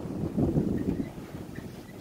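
Wind buffeting a handheld phone's microphone: an uneven low rumble that gusts up about half a second in and then eases off.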